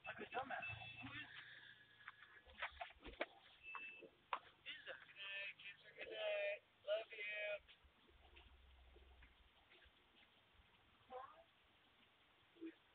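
Faint, indistinct voices in two short bursts, with a few scattered clicks, picked up by a doorbell camera's microphone.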